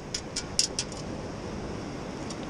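A perforated stainless-steel sand scoop being shaken to sift out a find: a quick rattle of about six sharp clicks in the first second, then only a steady wash of surf.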